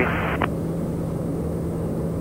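Steady cabin drone of a TBM 910 in flight, its single turboprop engine and the airflow making an even noise with a low steady hum beneath it.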